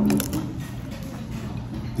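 A bite into a piece of crisp fried food, with a few quick crunches at the start, over a steady low hum.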